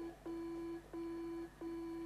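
Faint electronic beeping from a film's DNA-identification computer as it flashes up identity records: a steady low beep, each about half a second long, repeating about three times in two seconds.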